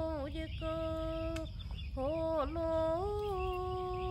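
A voice humming a slow melody in long held notes with short dips in pitch between them, over a low rumble.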